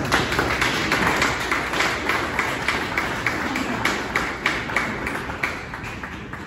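A small group of people applauding, with one pair of hands clapping close by at about three claps a second over the others. It eases off toward the end.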